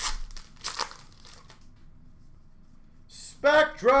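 Hockey card pack wrapper crinkling and tearing in two quick bursts right at the start, then handling goes quiet. Near the end a voice starts calling out the card just pulled.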